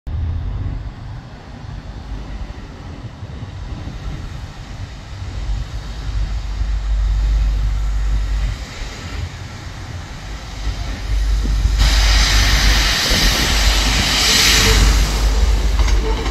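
Two coupled Class 156 diesel multiple units running with a steady low rumble. About twelve seconds in the sound grows much louder and fuller as the train pulls out of the platform and draws near.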